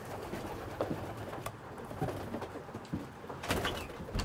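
Racing pigeons cooing inside their loft, with a short burst of clattering and rustling a little before the end.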